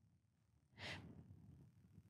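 Near silence, broken about a second in by one short breath drawn in by the man speaking.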